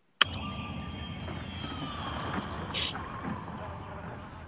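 A film trailer's opening soundtrack cutting in suddenly: a steady, dense ambient wash with several sustained high tones and a tone that slowly falls in pitch about two seconds in.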